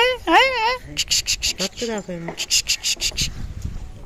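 A high, sing-song cooing voice rising and falling for about the first second, then rapid high-pitched insect chirping in quick repeated strokes for about two and a half seconds.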